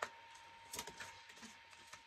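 A few faint, soft clicks of tarot cards being taken from the deck and laid down on the table.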